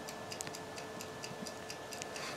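A clock ticking steadily and quickly, about four ticks a second, over a faint steady electrical hum.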